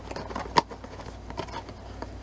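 Small cardboard box being opened by hand: fingers picking and scratching at the tape and flap, with a few sharp clicks, the sharpest about half a second in.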